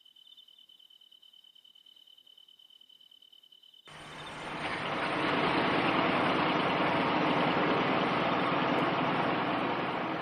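Near silence with a faint steady high tone. About four seconds in, a steady rushing of water over a low engine hum fades in and holds: the sound of a boat running across the sea.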